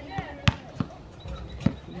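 A basketball bouncing on an outdoor court: three sharp thuds, the first and loudest about half a second in, the last near the end, with faint voices in the background.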